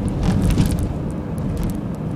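Steady low rumble of road and engine noise inside a moving car's cabin, heard while driving along a highway.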